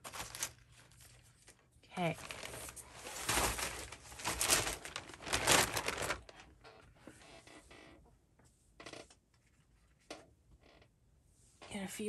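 A clear plastic zip-top bag crinkling and paper scraps rustling as they are stuffed into it, with the most noise in the first six seconds, then a few light rustles and taps.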